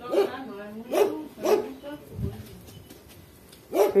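A dog barking angrily at other dogs that have come around: about four short barks in the first two seconds or so, roughly half a second apart.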